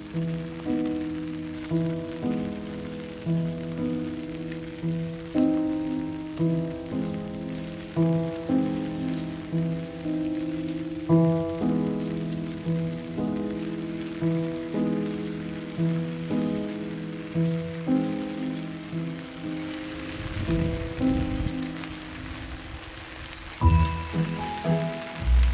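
Steady rain falling on a garden's leaves and pots, under slow instrumental music whose notes each start sharply and fade quickly, one or two a second.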